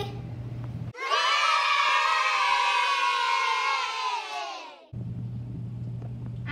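A group of children cheering and shouting together in one long cheer of about four seconds, trailing off downward in pitch at the end.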